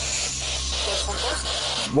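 Steady static hiss over a low hum, with faint, indistinct voices. Near the end the hiss cuts off and a man exclaims 'what' sharply.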